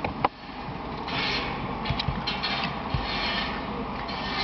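Handling noise: rubbing and scraping with a sharp click near the start and a few small clicks around the middle, as an auxiliary audio cable plug and a small music player are handled and connected.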